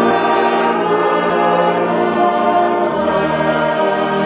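Mixed choir of women and men singing a Tongan hymn in full, sustained chords.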